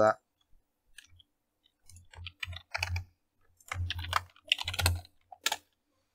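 Computer keyboard being typed on: irregular keystrokes in short runs with pauses between them.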